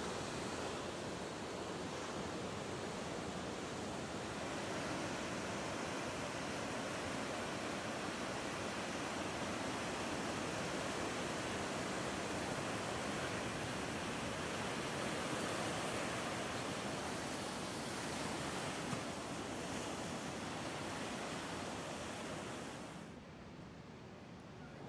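Ocean surf: a steady, even wash of breaking waves, which drops away about a second before the end.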